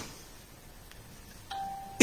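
A single short electronic beep, a steady tone of about half a second, comes in suddenly near the end over faint background noise, with a faint click before it.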